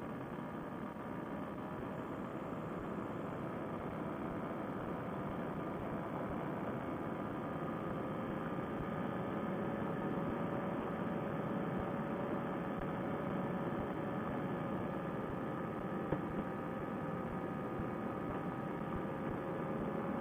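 Fresh Breeze Monster paramotor engine and propeller running at a steady cruise power in flight. It is a muffled, even drone whose pitch lifts slightly partway through and then holds.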